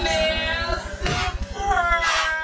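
A high-pitched voice singing over background music with a low pulsing bass.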